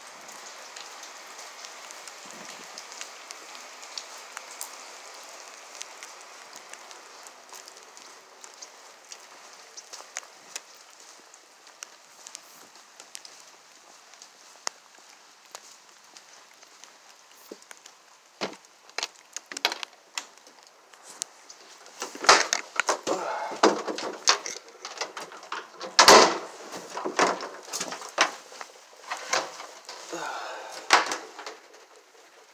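Steady light rain hissing for the first part. Then, from a little past the middle, rustling and knocking right against the microphone, growing loud near the end, like the phone being handled or rubbing against fabric.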